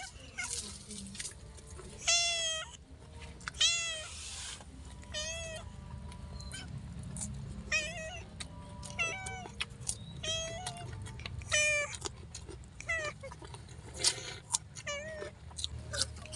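A cat meowing over and over, about ten short meows a second or so apart, the loudest two near the start. Small clicks of chewing and eating by hand fall between the meows.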